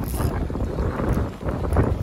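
Wind buffeting the microphone, with a spinning reel being wound in against a hooked bass and short clicks and rustles running through it.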